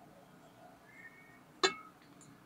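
A single short glass clink of one glass beaker knocking against another, ringing briefly, about a second and a half in, against otherwise quiet surroundings.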